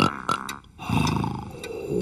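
Cartoon character snoring in bed, one long low snore about a second in, after a few short clicks.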